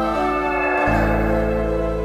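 Instrumental passage of a band's song with no singing: sustained keyboard chords and bass guitar, and a falling run of echoing guitar notes in the first second. The bass drops out briefly and comes back in just under a second in.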